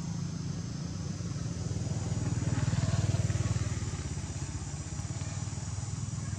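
An engine running with a low, fast, even pulse, growing louder around the middle and easing back.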